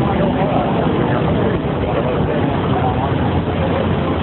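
Steady street din: the low rumble of idling emergency vehicles mixed with the murmur of onlookers' voices.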